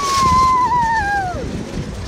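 A child's long, high-pitched squeal of glee on a spinning playground roundabout, held steady for about a second and a half, then sliding down in pitch and stopping.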